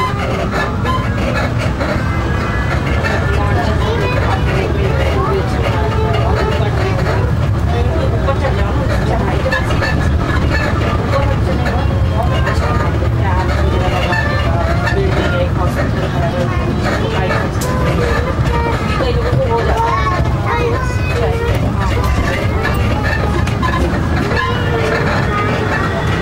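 Steady low rumble of a moving road vehicle heard from inside, with indistinct voices talking over it throughout; a faint thin whine rises slightly near the end.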